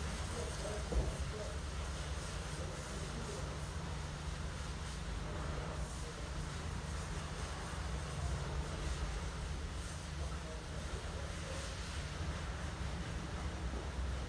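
Steady low rumble with a light hiss, with a brief soft knock about a second in.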